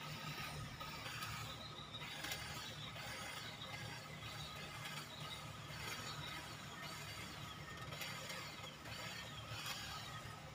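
Handheld electric hedge trimmer running steadily, its reciprocating blades clattering as they cut through shrub foliage.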